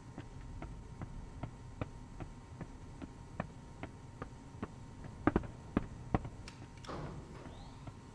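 Brisk footsteps on a hard stone tile floor, a steady two to three steps a second, with a few louder steps about five to six seconds in, over a faint low hum.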